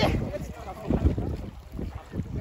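Water sloshing and splashing around a swimmer's handheld camera, with low rumbling buffeting on its microphone that swells about a second in and again near the end.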